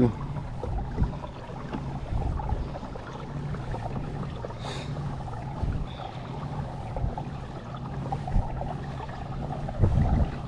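Pedal-drive kayak under way: water washing along the hull with a low steady hum, and a few light knocks.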